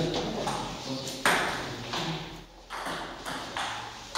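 Celluloid-type table-tennis ball clicking against the table and bats: a string of sharp, irregular taps beginning about a second in, with low voices in the hall.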